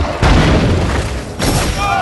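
Film sound-effect boom of a magical energy blast striking the ground. It comes in suddenly about a quarter second in and fades over the next second, with a second hit about a second and a half in.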